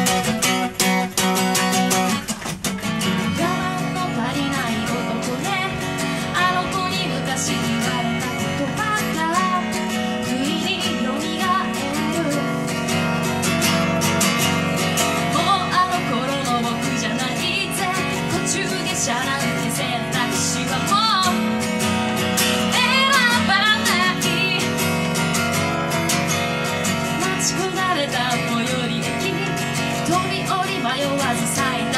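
Acoustic guitar strummed steadily, with a woman singing a live song at the microphone over it. There is a short break about two seconds in before the song carries on.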